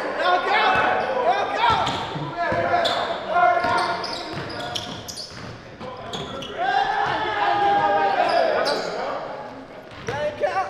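Players' voices calling and chattering over a basketball bouncing on a hardwood gym floor during a pickup game.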